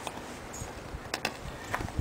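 Threaded half-inch steel pipe fittings being turned back with a length of pipe as a lever: a few scattered light clicks and knocks.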